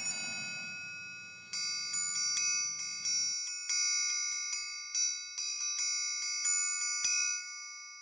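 Sampled orchestral triangle being struck in a quick run, about two or three hits a second, starting about a second and a half in. Some strikes are choked off by the mute articulation while others keep ringing. The last hit rings out with a long decay, showing that the library's mute does not fully stop the ring.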